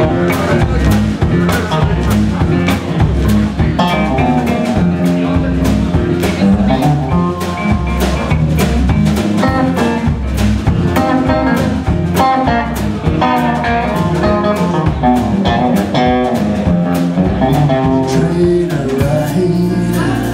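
Live blues band playing an instrumental passage: electric guitar lines over bass and a drum kit keeping a steady beat.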